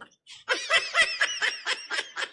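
A man snickering: a quick run of short, breathy laughs, about six a second, starting about half a second in.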